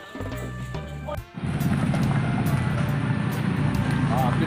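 Background music for just over a second, cut off abruptly, then a loud, steady low rumble from a small pickup truck's engine running.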